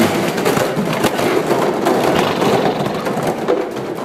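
A tall stack of plastic aerobic step platforms knocked over and crashing down onto a wooden gym floor: a sudden loud crash, then a dense run of clattering that dies away near the end.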